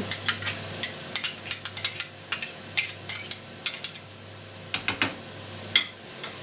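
Grated beet and carrot frying quietly in a pan. Over it comes a run of sharp clicks and crackles as a spoon scrapes tomato paste out of a glass jar into the pan. The clicks come thick for about four seconds, then only a few near the end.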